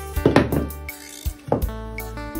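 Background music with steady tones, over two short knocks of a wooden mould being lifted off a leaf-wrapped rice cake and set down, the louder one near the start.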